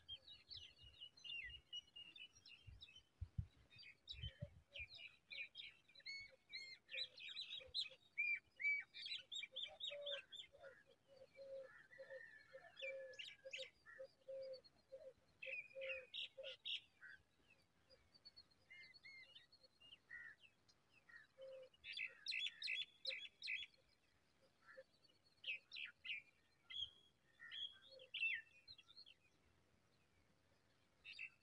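Several birds chirping and calling, short high sharp notes coming in clusters throughout, with a run of low repeated notes, about two a second, from about ten to seventeen seconds in. A few soft low thumps in the first few seconds.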